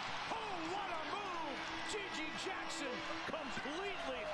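Basketball game broadcast audio playing at low volume: arena crowd noise with commentators talking and short squeaky glides from the court throughout.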